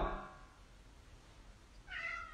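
A domestic cat meows once near the end: a high call that rises quickly at its start, after a stretch of near silence.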